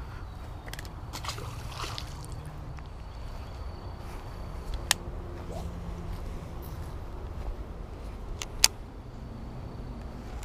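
Low, steady rumble of wind and handling on a chest-mounted camera's microphone, with faint scattered ticks. A sharp click comes about five seconds in, and a louder one comes near the end.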